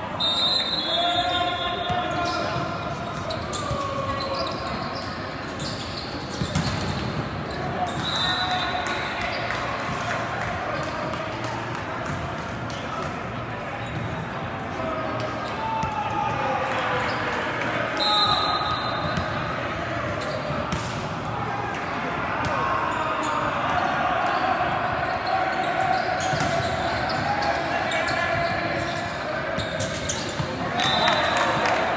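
Indoor volleyball in a large sports hall: many players and spectators calling out and chattering, with balls being struck and bouncing on the court. Short high referee's whistle blasts come near the start, about eight seconds in and about eighteen seconds in.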